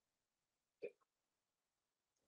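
Near silence: room tone, with one brief faint sound just under a second in.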